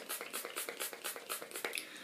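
Skin&Co face spray bottle pumped over and over in a fast run of short, quiet spritzes, about five or six a second, thinning out near the end.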